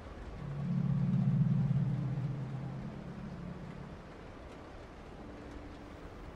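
A low, steady drone that swells up shortly after the start and fades away by about four seconds in.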